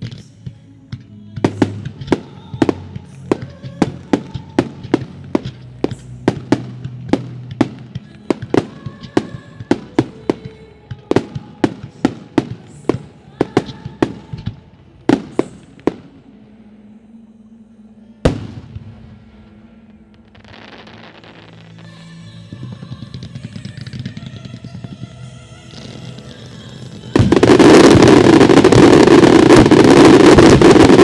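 Aerial fireworks firing: sharp reports in quick succession, about two a second, for the first fifteen seconds, then a single loud bang around eighteen seconds. A hissing crackle builds after it, and near the end a sudden, very loud dense barrage of shots sets in.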